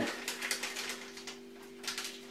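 Faint crackling and rustling of a small paper sachet of effervescent raising powder (gaseosilla) being opened by hand, in short irregular clicks, over a steady low hum.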